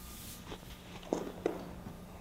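A few short, soft thuds as a thrown plyo ball lands in a throwing net and the thrower steps across artificial turf. The two loudest come about a second and a second and a half in.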